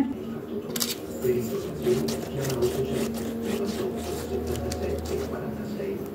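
Pastry brush dipped in egg white and dabbed and stroked over raw shortcrust pastry: irregular soft taps and brushing strokes, over a steady low hum.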